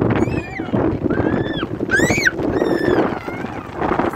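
About four high, rising-and-falling whistling squeals, each about half a second long. They sit over the steady noise of rain and road inside a moving vehicle.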